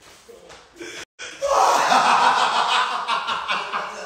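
A man laughing hard, starting loud just after a brief cut-out about a second in and tailing off near the end.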